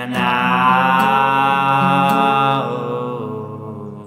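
A man's voice holding one long sung note over a strummed acoustic guitar, fading away just past halfway while the guitar chord rings out.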